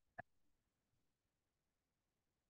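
Near silence: room tone, with one brief faint click just after the start.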